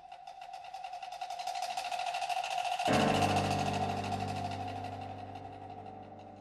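Live ensemble music: a held high note over a rapid, even percussion tapping that swells for about three seconds. A low sustained chord then enters and the sound slowly fades.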